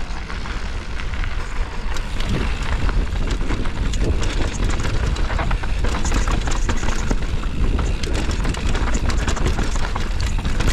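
Mountain bike riding fast down a dirt and gravel trail: wind buffeting the microphone in a steady rumble, tyres rolling over loose gravel, and a stream of small clicks and rattles from the bike over rough ground, busier in the second half.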